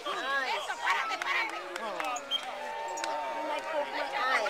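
Young children's voices chattering and calling out across an open playing field, with a few sharp knocks in the middle and a thin steady tone that comes in about two and a half seconds in.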